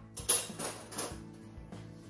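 Metal cutlery clinking and rattling as a kitchen drawer is searched for a teaspoon, the sharpest clink about a third of a second in, over background music.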